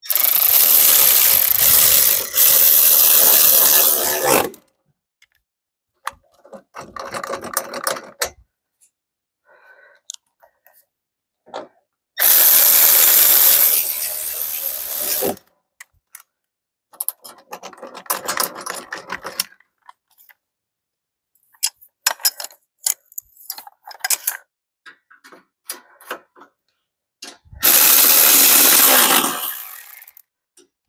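A cordless power tool runs in three bursts of a few seconds each, driving fasteners as engine parts are bolted back on. Between the runs come scattered clicks and small knocks from hand tools and parts being handled.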